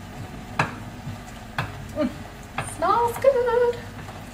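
A knife chopping fresh dill on a cutting board, a few separate strokes about a second apart, over the low sizzle of fish frying in the pan. Near the end comes a short voiced sound that rises in pitch and then holds.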